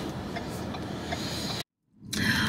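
Steady car-cabin rumble and hiss, heard from inside the car, cutting off abruptly to dead silence at an edit about one and a half seconds in.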